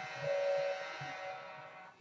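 A mobile phone buzzing with notifications: a steady buzz that swells briefly within the first second and then fades away.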